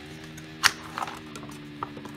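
Light clicks and knocks of a plastic MoYu MF9 9x9 speed cube being picked up and handled, the sharpest about two-thirds of a second in and a smaller one near the end, over a steady low hum.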